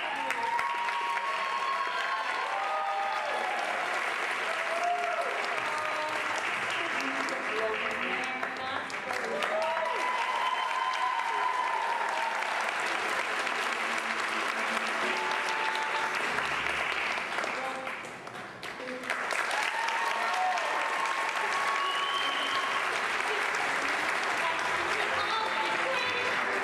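Audience applauding, with voices calling out over the clapping; the applause dips briefly about eighteen seconds in, then picks up again.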